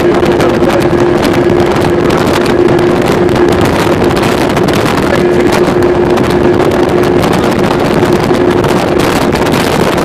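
Motorboat engine running steadily under way, holding one even hum, with wind rushing over the microphone.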